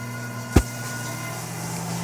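Microwave oven running, a steady low electrical hum, with a single sharp click about half a second in.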